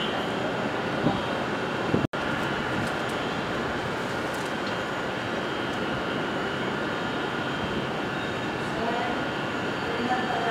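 Distant city traffic noise heard from high above the streets, a steady hum. The sound cuts out for an instant about two seconds in.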